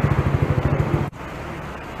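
Motor scooter engine idling close by, a low, steady pulsing that stops abruptly about a second in. Quieter street traffic noise follows.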